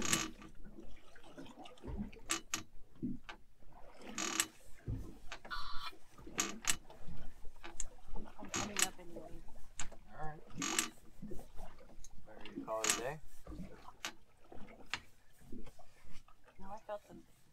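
A fishing reel being cranked to bring in a hooked fish, with scattered clicks and knocks, and brief low voices now and then.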